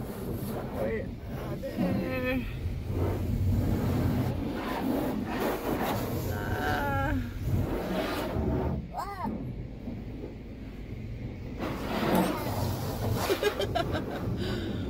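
High-pressure car-wash spray striking the car's body and windows, heard from inside the cabin as a steady hiss over a low rumble, louder near the end. Short wordless voice sounds come and go over it.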